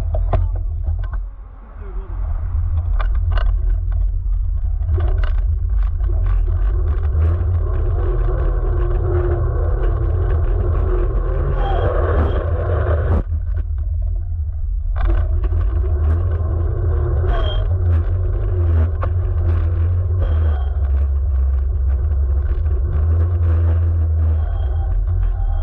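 Electric scooter riding over asphalt, heard from a camera mounted low by the wheel: a constant heavy wind rumble on the microphone with tyre noise on the rough surface. Scattered knocks and rattles come through, and the tyre noise drops away for a moment about halfway through.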